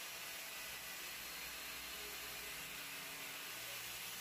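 Faint, steady whir and hiss of a Makita handheld marble saw with a diamond disc running slowly through a 45° cut in porcelain tile, heard low in the mix.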